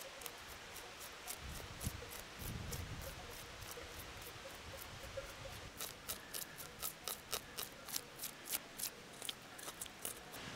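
The sharp spine of a Victorinox Swiss Army knife wood-saw blade scraping scales off a small fish: a series of short scraping strokes, about three a second, faint at first and louder in the second half.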